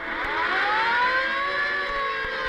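Hand-cranked mechanical alarm siren being wound up by hand: a wail that rises in pitch over the first second, then holds and begins slowly to sag.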